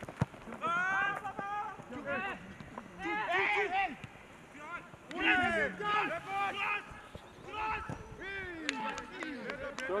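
Voices shouting and calling out on an outdoor football pitch during play, in many short separate calls.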